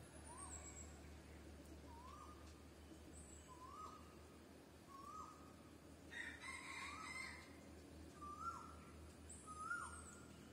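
Faint bird calls: a short whistled note repeated about every one and a half seconds, with a few thin, high chirps and a brief rustle-like hiss about six seconds in.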